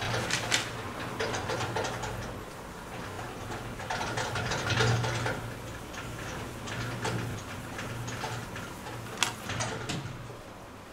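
Blackboard eraser rubbing chalk off a blackboard in repeated uneven strokes, with a couple of sharp knocks near the end, over a low steady hum.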